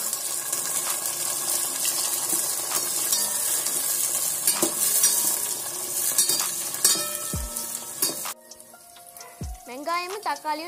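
Chopped tomatoes and small onions sizzling in hot oil in a stainless-steel pot, stirred with a spoon that knocks against the pot a few times. The sizzle stops abruptly about eight seconds in.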